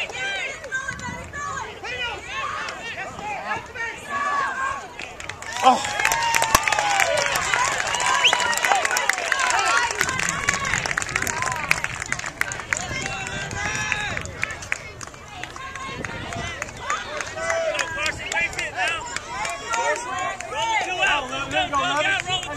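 Many voices of spectators and players at a youth baseball game, overlapping shouts and chatter that swell into louder cheering with claps about six seconds in, then ease back to scattered calls after about eight seconds.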